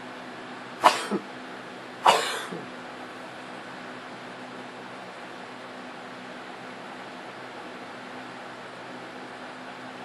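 A person coughs twice, about a second apart, over a steady low hum.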